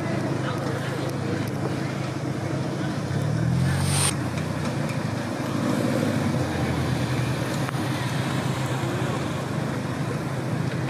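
Car engines running in the street, one revving up and back down about three to four seconds in, with a brief sharp hiss just after.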